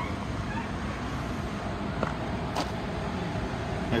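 The 3.7-litre V6 of a Ford Taurus Police Interceptor idling, a steady low hum, with two faint clicks in the middle.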